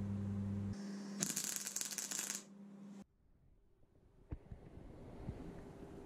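An electric arc welder humming, then its arc crackling and sizzling for about a second as a tack weld is struck on the steel tube. It then cuts off, leaving faint room noise with a couple of small clicks.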